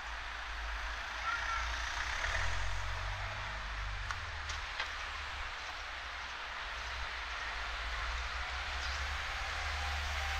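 Slow cars driving past on a narrow town street: a low engine rumble that swells about two to four seconds in as a car goes by, then builds again near the end as a van approaches, over general street hubbub.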